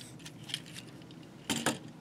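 Plastic parts of a Transformers Voyager Class Whirl action figure clicking as they are handled and pegged into place: a few faint clicks, then two sharper clicks about one and a half seconds in.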